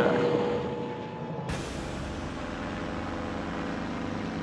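Helicopter engine and rotor noise heard inside the cabin. About a second and a half in, it cuts to a quieter, steady helicopter drone heard from the ground below.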